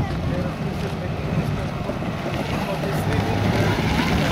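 Motorcycle engine approaching, its low steady running growing gradually louder as it comes close.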